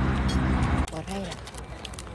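An engine runs close by with a steady low hum, then cuts off abruptly under a second in. A short vocal sound and a few small clicks follow.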